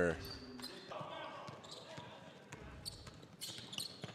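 Gym game sound, fairly quiet: faint background voices and a few basketball bounces on a hardwood court in a large, echoing gym.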